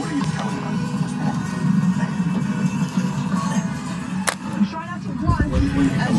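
Television news audio: a music bed with a voice over it. A sharp click comes about four seconds in and a low thump near the end.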